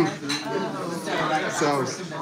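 Forks and spoons clinking against china breakfast plates as people eat, with voices talking over it.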